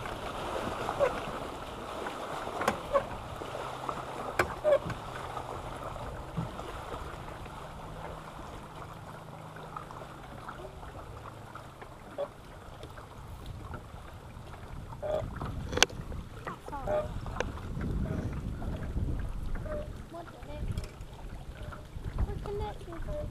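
Small waves lapping against the hull of a small fishing boat as it rocks, with wind on the microphone and a few sharp clicks and knocks, one louder knock near the end.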